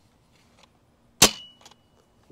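Adventure Force Nexus Pro spring-powered dart blaster firing one Worker Gen 3 half-length dart: a single sharp crack a little over a second in, followed by a faint steady high tone. The dart fed a little funny and, in the shooter's view, probably got stuck in the barrel a little bit.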